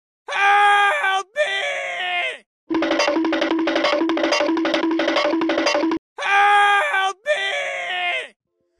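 A cartoon man's high-pitched drawn-out scream, breaking off and followed by a second cry, then about three seconds of upbeat music with a steady beat, then the same scream and cry again.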